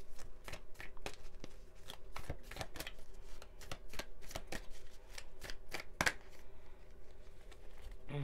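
A deck of tarot cards being shuffled by hand: a quick run of soft card slaps and flicks, with one louder slap about six seconds in, easing off near the end.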